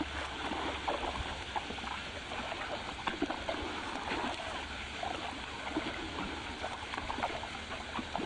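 Trout feeding at the pond surface after food is thrown: many small, irregular splashes and slurps, over a steady low hum.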